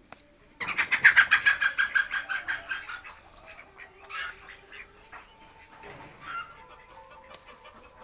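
A bird calling: a fast run of harsh repeated notes, about ten a second, starting just under a second in and fading away over about two seconds, followed by a few fainter calls.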